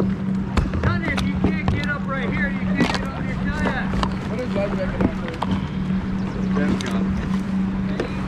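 A steady low hum runs throughout under indistinct voices, with a few light knocks.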